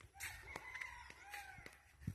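Rooster crowing: one faint, drawn-out crow.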